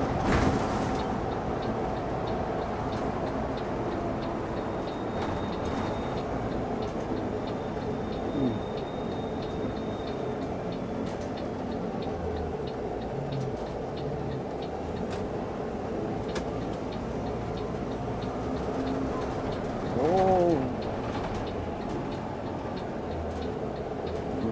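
City bus driving, heard from inside the front of the cabin: steady engine and road noise with a constant hum. A short tone rises and falls about twenty seconds in.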